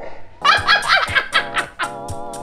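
Two women shrieking with laughter in loud, high-pitched bursts for over a second, over background music.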